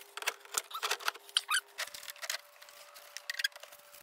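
Aluminium-framed cargo platform being handled and set down into place: a scatter of sharp clicks, knocks and scrapes, with a short squeak about a second and a half in.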